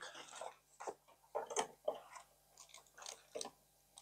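Faint, scattered clicks and rustles of cables and small parts being handled, a few light ticks a second apart.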